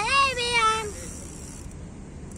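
A young boy's high-pitched, drawn-out call, a greeting that rises then slowly falls in pitch and lasts under a second.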